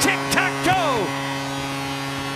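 Arena goal horn sounding a long, steady blast right after a home goal, with loud, falling shouts from excited voices over it in the first second.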